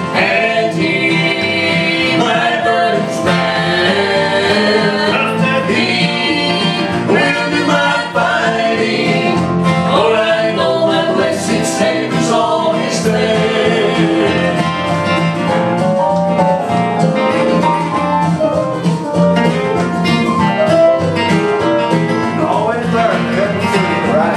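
Three voices, two men and a woman, singing a country gospel song in harmony to an acoustic guitar.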